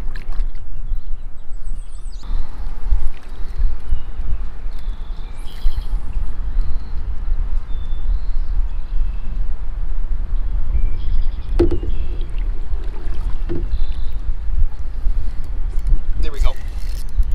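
Wind buffeting the microphone with a gusty low rumble, over faint water sounds around a kayak. A couple of short knocks come near the end.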